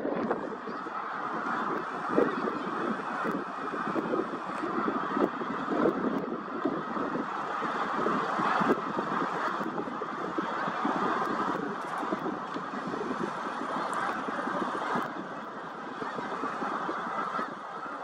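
A huge flock of thousands of snow geese calling at once as many take flight: a dense, unbroken din of overlapping honks, fading slightly near the end.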